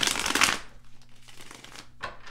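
A deck of tarot cards shuffled by hand: a loud rush of flicking cards in the first half-second, then softer shuffling that goes on until near the end.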